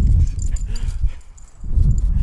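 A small dog whining briefly, over low rumbling noise on the microphone that drops away for a moment about a second and a half in.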